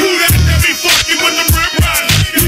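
Hip hop track: rapped vocals over a beat with deep bass notes and a kick drum.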